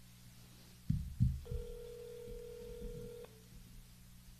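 Two knocks from a phone being handled near the microphone, then one steady telephone ringing tone about two seconds long from a speakerphone: the ringback tone heard while a call rings through to the other end.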